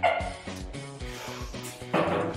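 Background music with a steady beat, over which a person makes a loud gagging sound right at the start, with another sharp vocal burst near the end.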